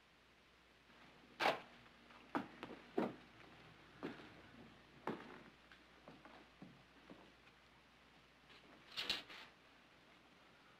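Boot footsteps on a wooden floor: a run of uneven knocks, with a louder clatter of several knocks near the end.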